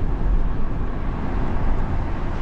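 Steady road noise of a moving van heard from inside its cabin: tyre and engine noise at highway speed.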